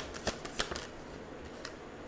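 Tarot cards being shuffled by hand: a few sharp card clicks in the first second and one more later, with faint rustling between.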